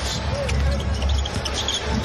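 Basketball being dribbled on an indoor hardwood court, over steady arena crowd noise.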